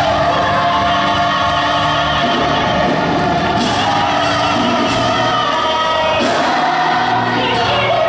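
A large choir singing long held notes, with audible vibrato.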